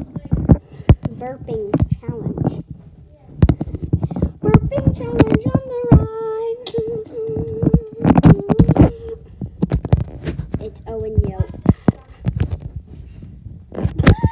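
Children's voices calling out and vocalizing, with one drawn-out held cry lasting several seconds in the middle, among frequent sharp knocks and thumps.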